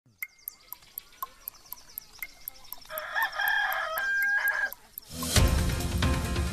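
Clock ticking about four times a second under a countdown, with a rooster crowing about three seconds in. Theme music comes in loudly shortly before the end.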